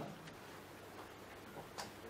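Faint room tone with a steady low hiss and a single small click near the end.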